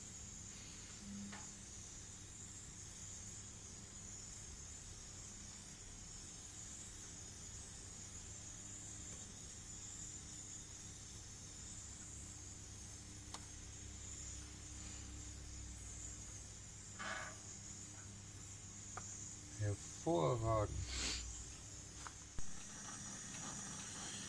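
Faint steady hiss and low hum of a gas grill running with its rear burner lit and the rotisserie spit turning. A short murmur of a man's voice about twenty seconds in.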